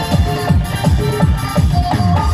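Live Nagpuri band music through a PA with no vocal line: a keyboard melody over a fast electronic drum beat, about four low beats a second.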